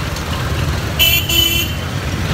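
Busy street traffic rumbling, with a vehicle horn tooting twice about a second in: a short toot, then a longer one.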